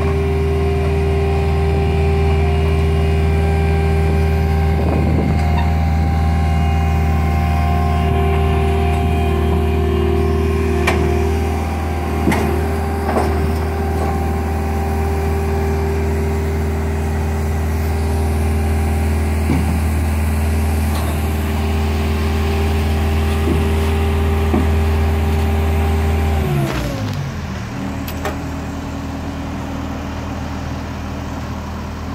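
Diesel engine of a JCB 260T compact track loader running steadily under throttle, with a few metal clanks as its tracks climb the steel trailer ramps. Near the end the engine winds down and the sound drops to a quieter steady running.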